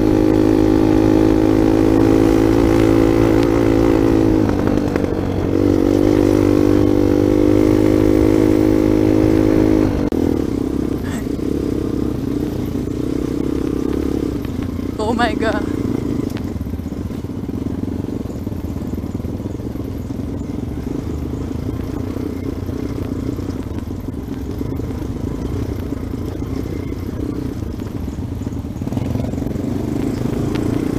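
Dirt bike engine running steadily under way, easing off briefly about five seconds in. About a third of the way through the note gives way to a quieter, rougher engine and riding noise, with one short high-pitched sound about halfway.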